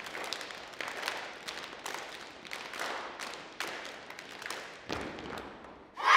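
Scattered hand claps and knocks from a group of children in a school gymnasium, over a steady background hiss. There is a dull thump about five seconds in.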